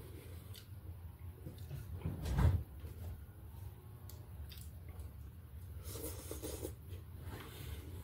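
Eating sounds at a table: chewing and handling food and plate, with a dull bump about two and a half seconds in and a few short rustles near the end, over a steady low hum.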